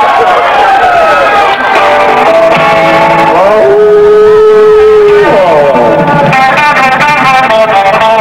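Live psychobilly band playing, led by electric guitar with sliding, bending notes and one long held note about halfway through.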